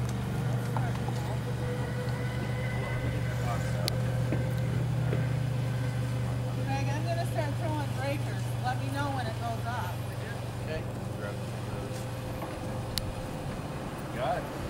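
A motor vehicle engine running with a steady low hum that eases off after about ten seconds. Faint voices can be heard in the background.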